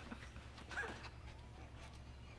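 Quiet office room tone with a steady low hum, and one brief faint sound a little under a second in.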